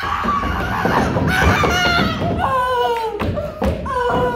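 Thumps of an actor tumbling on a wooden stage, with two sharp thuds near the end, amid wordless vocal cries from the cast.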